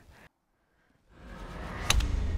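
A driver striking a golf ball off the tee: one sharp crack near the end, after a low rumble has risen in out of a brief silence.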